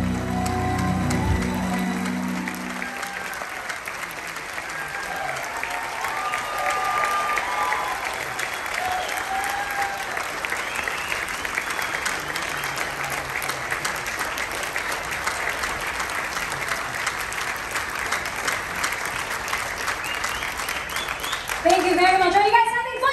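Theatre audience applauding and cheering at the end of a song, a few voices calling out over the clapping. The band's last held chord dies away in the first two or three seconds.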